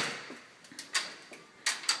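Door hardware clicking as a security fly screen door and the inner door are opened: a sharp click of the latch, then another click about a second in and two more clicks and knocks near the end.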